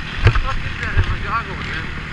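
Dirt bike engine running while riding a dirt trail, its pitch rising and falling a few times with the throttle, with wind on the microphone and sharp knocks from the bike hitting bumps.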